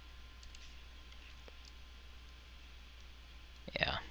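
A few faint computer mouse clicks over a steady low electrical hum. A short, louder burst of noise comes near the end.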